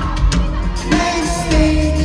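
Live pop-rock band playing through a concert PA, heard from within the crowd: drums, bass and a held melodic line.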